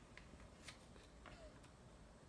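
Near silence with a few faint scratches and taps of a pencil writing on a paper worksheet.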